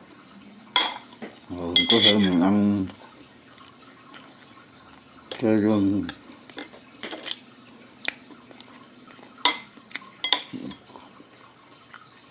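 A metal fork clinking and scraping against a plate while sausages are cut and picked up, with sharp clinks about a second in, around two seconds and again near the ten-second mark. A voice makes two short sounds, about two seconds in and again about five seconds in.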